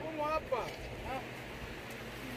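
Faint voices talking in the background during the first second, then a steady outdoor hiss with no distinct event.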